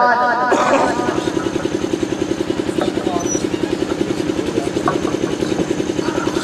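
An engine running steadily with a rapid, even pulse of about eight beats a second.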